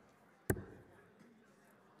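A dart thudding once into a Winmau bristle dartboard about half a second in, fading quickly.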